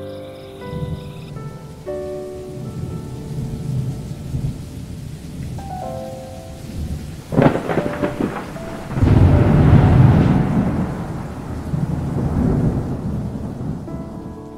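Thunderstorm: low thunder rumbling throughout, a sharp crack about halfway through, then a long, loud roll of thunder that dies away, with rain falling.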